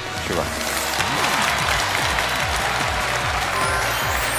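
Studio audience applauding, with a background music track and its repeating low bass notes playing under the clapping.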